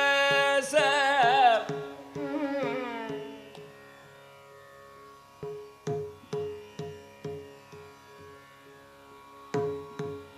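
A male Carnatic singer in Raga Thodi holds a note, then moves through gliding, ornamented phrases that fade out about three seconds in, over a steady tanpura drone. From about halfway, a mridangam sounds single ringing strokes about twice a second, each dying away before the next.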